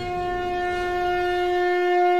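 A conch shell (shankh) blown in one long held note, steady in pitch and slowly swelling.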